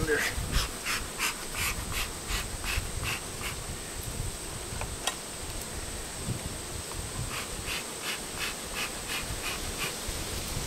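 Bellows bee smoker pumped in quick puffs of hiss, about three a second, in two runs, one at the start and another near the end, as smoke is puffed onto bees at a hive's feed pail. A single sharp click comes about halfway through.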